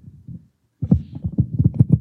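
A quick, irregular run of low, dull thumps and knocks starting under a second in, about eight to ten a second, after a few faint knocks at the start.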